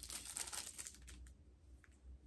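Faint rustling and small clicks of a makeup brush and its plastic packaging being handled in the fingers, busiest in the first second, then only a few soft ticks.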